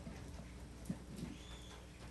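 Faint room tone with a couple of soft knocks about a second in.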